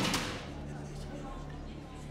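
A sudden loud hit with a brief rushing tail right at the start, then a steady low hum.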